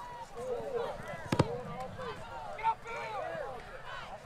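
Football crowd in the stands calling and shouting, many voices overlapping, with a single sharp knock about a second and a half in.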